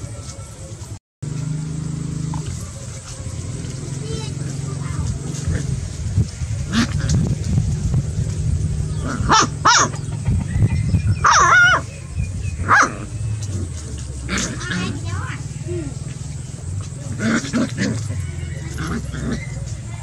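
Puppies play-fighting and play-biting, giving short growls and high yelps, most of them in the second half, over a steady low hum. The sound drops out briefly about a second in.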